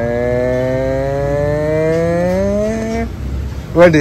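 A long held vocal hoot imitating a train horn, in answer to 'how does the train go', rising slowly in pitch and stopping about three seconds in.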